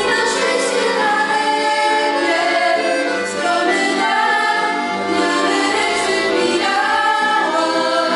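Three young voices singing a song together, accompanied by two piano accordions.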